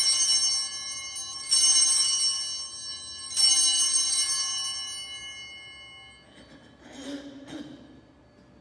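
Altar bells (a set of small sanctus bells) rung three times, about two seconds apart, each ring fading away, marking the elevation of the host at the consecration. The first ring is already sounding at the start.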